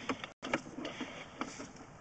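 Sewer inspection camera's push cable being fed down the line, giving faint, irregular light clicks and rattles.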